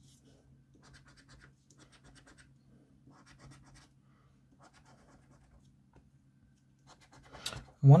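A coin scratching the silver latex off a scratchcard, in short bouts of quick scraping strokes with brief pauses between them.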